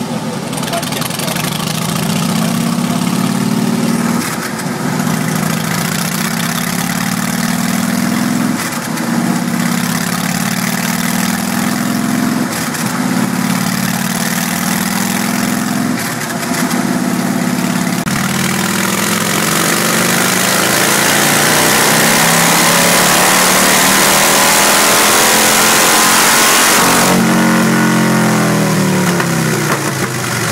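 Harley-Davidson Rocker C's Twin Cam 96B V-twin, fitted with an aftermarket air intake and curved chrome exhaust, running under load on a chassis dynamometer. It revs up and drops back several times, then climbs in one long rise and falls off sharply near the end.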